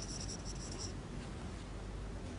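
Marker pen squeaking across flip-chart paper in several short strokes in about the first second, over a low room hum.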